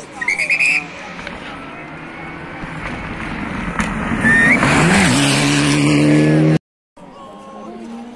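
A Mitsubishi Lancer rally car's engine approaches at speed on gravel, growing steadily louder, with a brief pitch sweep and gravel noise as it passes close by. It then runs loud and steady until it cuts off abruptly. Just under a second in there is a short, loud, high-pitched call from a voice, and after the cut a more distant engine is heard approaching.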